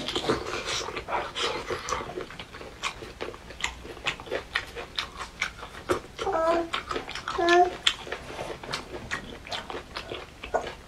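Close-miked wet chewing and biting of braised pork ribs: rapid smacking, sucking mouth clicks throughout, with two short hums of the eater's voice about six and seven and a half seconds in.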